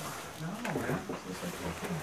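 A quiet, low voice whose pitch slides up and down several times, like a growl or a hum.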